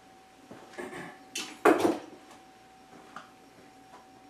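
Hand tools and bonsai wire being handled: a few light knocks, then a sharp click about a second and a half in, followed at once by a louder clunk, as excess wire is cut and the cutters are put down. A faint steady hum runs underneath.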